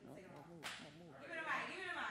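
Indistinct voices talking, with one sharp snap about two thirds of a second in and a louder vocal outburst in the second half.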